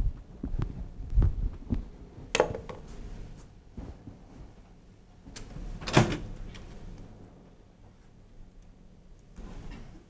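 Scattered knocks and clicks, several dull thuds in the first two seconds and two louder, sharper knocks about two and a half and six seconds in, with fainter clicks between.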